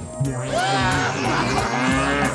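A long, low cow-like moo starting a moment in and held about two seconds, over music.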